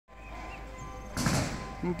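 A car horn sounding faintly in the street, held as a steady tone, making a racket. About a second in, a short, louder burst of noise cuts across it.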